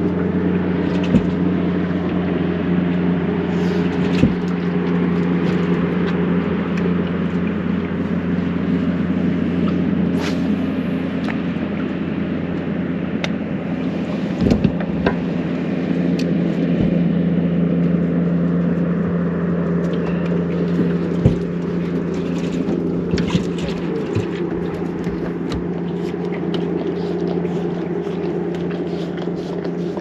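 A motor on the boat running steadily with a low hum and its overtones, broken by a few sharp knocks.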